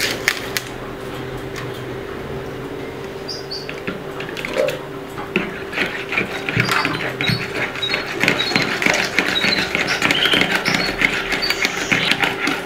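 Wire whisk beating liquid cake batter in a plastic bowl: a fast, rhythmic run of clicks and scrapes that starts about five seconds in and keeps going. A steady hum runs underneath.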